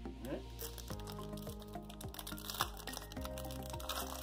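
Soft instrumental background music with held chords; the chord changes about a second in and again just past three seconds.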